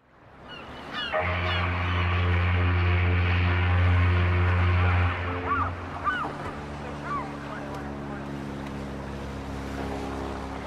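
A ship's horn sounds one long, low, steady blast lasting about four seconds, over the wash of water, with gulls calling briefly near the start and again after the blast. A weaker, lower steady drone follows the horn.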